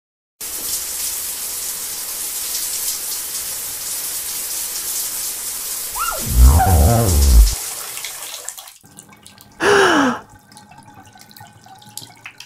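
Bathroom sink tap running steadily, then shut off about nine seconds in, leaving a few faint drips. Twice during this, a person's voice makes a short sound without words: once about six seconds in, loud, and again briefly around ten seconds.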